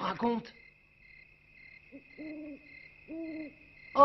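Cartoon owl sound effect: two low hoots about a second apart, over a steady high whine of night ambience.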